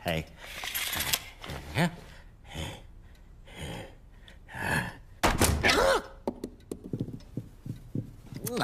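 Cartoon character's wordless grunts and mumbles with comic sound effects, and a heavy thud about five seconds in as a door shuts.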